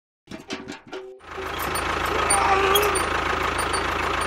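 A tractor engine running steadily and loudly with a rapid low putter, starting about a second in.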